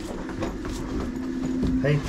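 Footsteps on a floor strewn with debris, irregular low thuds and scuffs, over a steady low hum.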